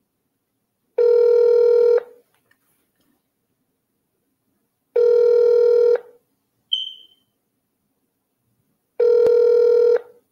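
Ringback tone of an outgoing phone call: three one-second rings, one every four seconds. A short high chirp sounds between the second and third ring.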